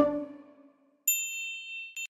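The last notes of a children's song die away within the first half-second, then about a second in a bright, high chime sound effect dings and rings on, struck again at the very end.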